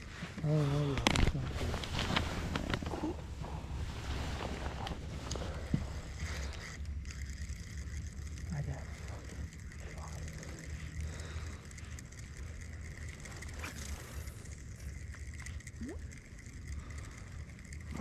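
Steady low rumble and hiss of an open-water boat setting, with brief muffled talking about a second in and a few light clicks of rod and reel handling.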